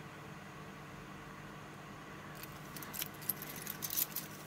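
Black-coated steel link bracelet of a Citizen AN3605-55X watch clicking and jingling softly as it is handled and turned in the fingers, starting a little past halfway in irregular small clicks over a faint steady hum.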